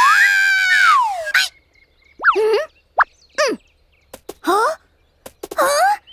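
Wordless, squeaky cartoon-bunny vocal sounds: a long high squeal that rises and then falls during the first second or so as she flies through the air, then about five short chirping calls that slide up or down in pitch.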